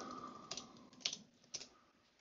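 Computer keyboard keys being typed: a few faint, separate keystrokes about half a second apart.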